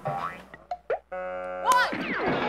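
Comedy sound effects: a boing-like rising glide, a few clicks, a held buzzy tone, then a sharp rising whistle near the end, the loudest moment.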